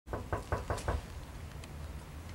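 A quick run of five knocks on a door, about five a second, over in the first second, then a low steady rumble.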